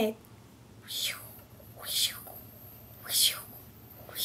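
A woman's breathy, whispered voice sounds, three short hisses about a second apart.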